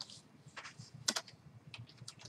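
Irregular keystrokes on a computer keyboard as lines of code are typed, with a louder clack about a second in.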